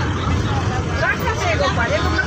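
Several passengers talking at once inside a bus cabin, over the steady low rumble of the bus engine.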